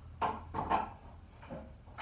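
A few short knocks and clatters of household objects being handled, the loudest a little under a second in.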